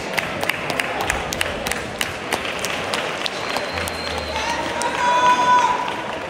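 Busy sports-hall crowd noise with scattered hand claps throughout. A loud pitched sound is held for just over a second near the end.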